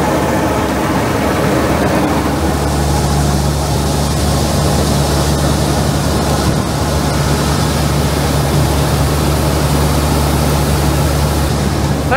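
Claas Dominator combine harvester running steadily while its unloading auger empties the barley grain tank into a trailer. A deeper steady hum joins in about two seconds in and holds.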